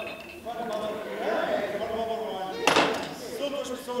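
A man speaking in theatrical dialogue, with one short, sharp impact about three-quarters of the way through.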